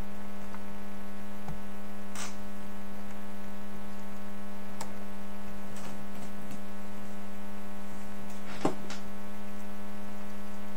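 Steady electrical hum in the recording, one strong low tone with a ladder of evenly spaced overtones, unchanging throughout. A few faint clicks sound about two, five and nine seconds in.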